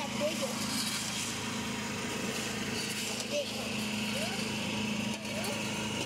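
A small engine running steadily, with men talking in the background.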